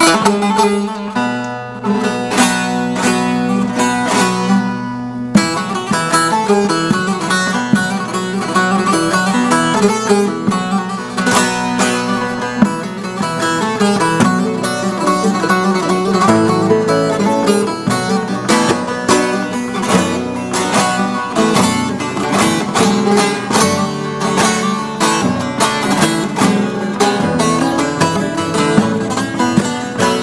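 Bağlama (long-necked Turkish saz) played solo with a plectrum: a fast picked instrumental introduction to a türkü. The playing gets fuller about five seconds in.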